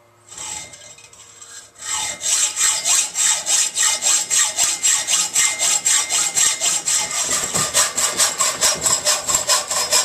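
Hand hacksaw cutting lengthwise down a steel tube held in a vise. A couple of seconds of quieter starting strokes, then from about two seconds in fast, even rasping strokes.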